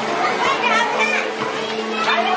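Many children's voices chattering and calling out at once, the babble of a crowd of students at play in a school courtyard.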